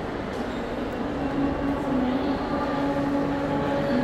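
Shopping-mall ambience: a steady rumble of ventilation and distant crowd noise, with faint wavering tones from about a second and a half in.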